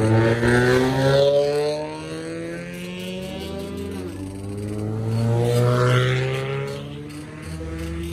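Car engines driving past and accelerating, their pitch rising and falling. They are loudest right at the start and again around five to six seconds in.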